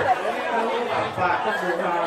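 Speech with crowd chatter; one voice draws a word out into a long held note near the end.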